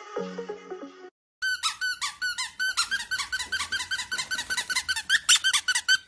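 About a second of song, then a brief gap, then a fast, even run of short high squeaks, about six a second, continuing to the end.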